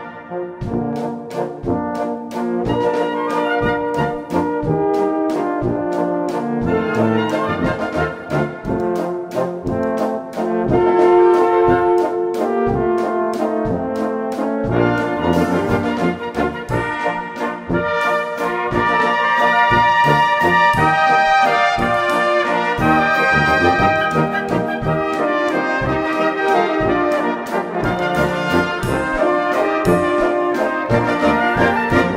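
Brass band music: a waltz played by brass instruments, with a steady beat running under the melody.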